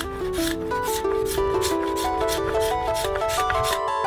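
Hand sanding of a yew longbow stave: quick rubbing strokes, about three a second, that stop shortly before the end. A melody of plucked notes plays over it.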